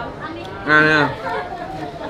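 Speech: a short spoken phrase about a second in, with quieter chatter around it.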